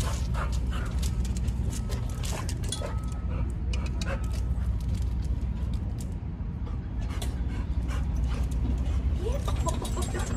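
A dog moving on concrete, with many light clicks and a few short high whimpers a couple of seconds in, over a steady low rumble.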